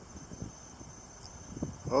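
Faint steady background noise with a thin high whine, then a man starts speaking right at the end.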